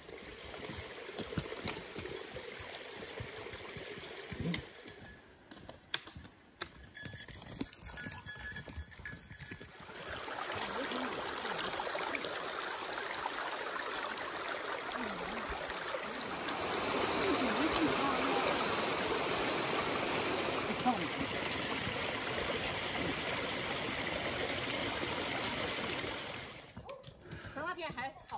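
Hikers on a forest trail: footsteps and clicking trekking poles with faint voices, then from about ten seconds a steady rush of running water that grows louder from about seventeen seconds and drops away near the end.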